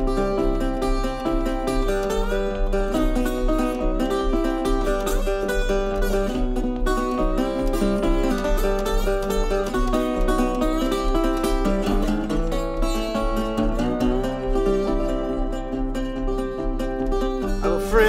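Solo acoustic single-cone resonator guitar fingerpicked in an instrumental break. A steady, evenly repeating bass runs under a plucked melody.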